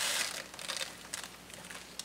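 Plastic zip-top bag crinkling and clover seeds rustling as a tablespoon digs into the seed inside the bag.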